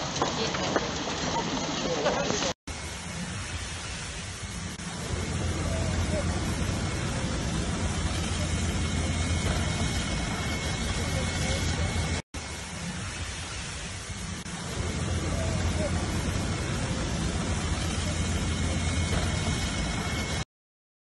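A man's voice over street noise, then a cut to a steady rushing noise of fire hoses spraying, with a low engine drone that grows louder a few seconds in; the same stretch of sound repeats about halfway through.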